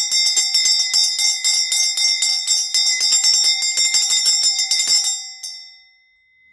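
A bell rung rapidly and loudly, about five strikes a second, for about five seconds. It stops, gives one last strike, and rings out.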